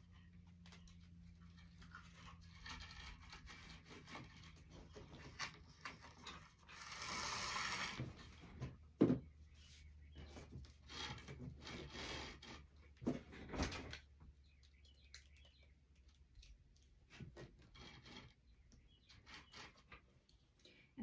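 Deco mesh being pulled off its roll and spread out on a cutting mat: soft rustling and scraping with scattered knocks on the table. A louder, longer rustle comes about seven seconds in, and two sharper knocks come about nine and thirteen seconds in.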